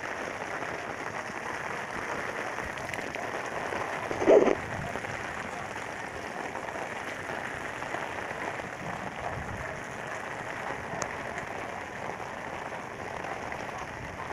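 Steady rain falling on an open umbrella overhead, an even hiss of drops on the fabric. A brief louder knock about four seconds in.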